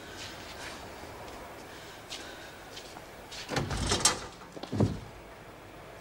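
A heavy steel cell door being opened: about three and a half seconds in, a loud rattle and scrape of the latch and door, then a single thud about a second later.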